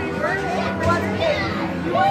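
Children talking and exclaiming over one another, with music playing in the background.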